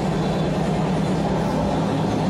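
Steady, loud background din with a strong low hum and a spread of noise above it, with no clear tune: the ambient noise of a crowded car-audio show.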